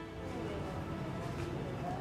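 Quiet background ambience: a low, steady murmur with faint traces of distant voices.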